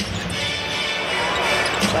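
Basketball bouncing on a hardwood court under steady arena crowd noise.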